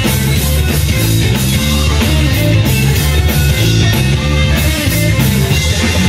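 Live blues band playing an instrumental stretch with no vocals: electric guitar over a changing bass line and a drum kit keeping a steady beat. The sound is loud and continuous.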